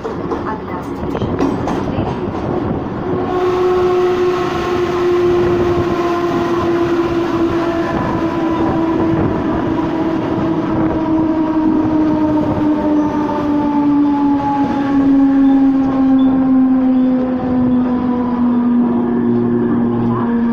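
Mumbai suburban electric local train heard from its open doorway: steady rumble of the wheels on the track, and from about three seconds in a loud motor whine that slowly falls in pitch as the train slows along a station platform.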